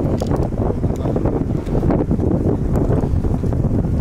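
Wind buffeting the microphone of a handheld camera: a loud, even rush of low noise throughout.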